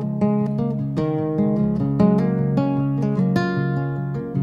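Instrumental passage of acoustic plucked-string music: a steady run of picked notes over a sustained low bass, with no singing.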